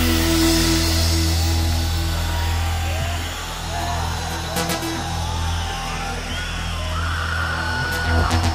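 Live band music: sustained chords over a steady low bass, with a gliding melody line coming in near the middle and sharp drum hits about halfway through and again at the very end.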